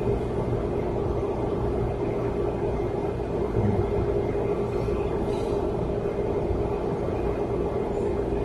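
Steady low rumble with a constant hum: the background noise of the room and its sound system, with no speech.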